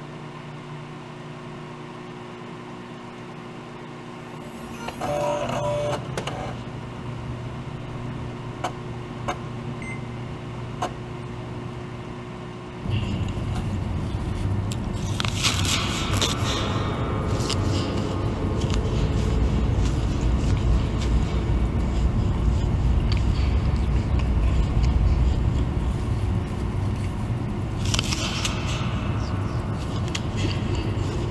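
A steady electronic hum with a short tone about five seconds in and a few faint clicks, then from about thirteen seconds a loud low rumbling drone. Over the drone, crunchy bites of an apple come a few seconds later and again near the end.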